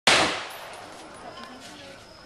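A single AK-47-type rifle shot right at the start, its report ringing away over about half a second.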